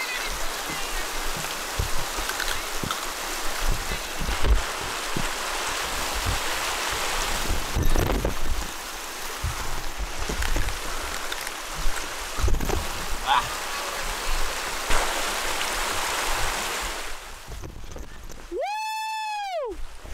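Steady rush of glacial meltwater, with gusts of wind thumping on the microphone. Near the end the water sound cuts out and a single pitched tone rises and falls over about a second.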